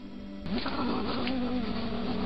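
A badger at its sett entrance giving a low, wavering call that starts about half a second in and carries on, its pitch bending up and down.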